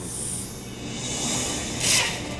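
Anime soundtrack with music under a rushing noise that builds, ending in a loud whoosh as a thrown temari ball flies in.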